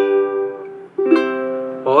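Ukulele chords strummed slowly, one stroke at a time: a chord rings and fades, then a second chord is struck about a second in and left to ring.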